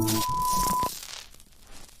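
Electronic glitch sound effect of a video logo transition: a steady high beep that cuts off sharply just under a second in, followed by faint crackles.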